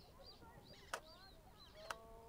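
Nikon D750 DSLR taking a shot: two sharp clicks about a second apart, faint against soft birdsong.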